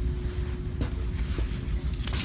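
Low, steady rumble with a few faint clicks and a thin steady hum behind it: handling and movement noise on a handheld camera's microphone as it is carried and swung along a store aisle.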